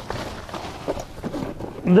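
Faint handling sounds inside a pickup truck's cab, with a few light clicks about halfway through, as someone reaches in and moves items around.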